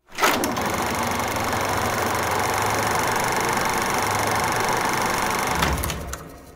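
Logo sound effect: a steady mechanical whirring noise that starts abruptly, holds level for about five seconds, then fades away near the end.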